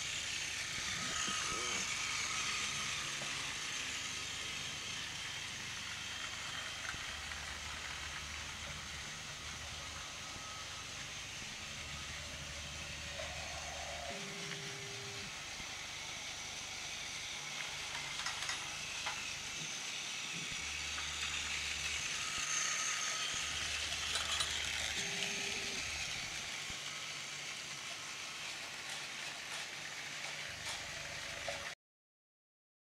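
Battery-powered TOMY Plarail toy trains running on plastic track: small motors and gearboxes whirring steadily, with occasional clicks of wheels and couplings on the track joints.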